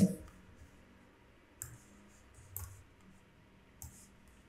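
A few faint, short clicks spaced about a second apart, typical of a computer mouse being clicked at a desk.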